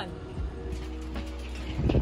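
Background music with held, steady notes over a low drone.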